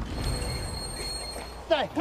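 Train on a railway line: a low rumble with thin, steady high tones that slowly fades. Near the end a man starts shouting.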